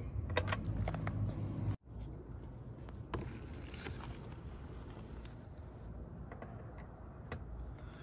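Small metallic clicks and taps from handling a hand-operated nut rivet (Nut Zert) tool and its M8 nut insert, quick and close together for the first couple of seconds, then sparse and faint.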